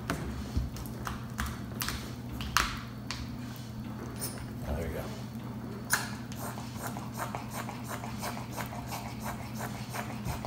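Light clicks and taps of a metal measuring cup and containers being handled on a countertop while foam hand wash is dispensed. The clicks become a run of even light ticks, about three or four a second, from about halfway through, over a steady low hum.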